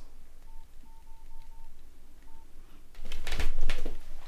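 Nokia 6234 keypad tones as its keys are pressed: six short beeps of one pitch, five in quick succession and one after a short pause. Near the end comes a louder burst of rustling noise.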